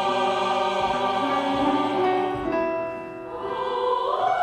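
Mixed choir singing a sacred piece in long held chords. The sound softens about three seconds in, then swells again near the end.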